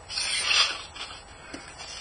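Hands brushing over loose, crumbly flake-soil substrate in a plastic rearing box: a soft rustle lasting about a second.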